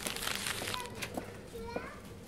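Indistinct background voices, children's among them, with a sharp click at the very start.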